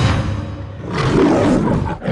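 A lion's roar used as a sound effect in a logo sting, over music: a sharp hit at the start, then a rough roar swelling about a second in.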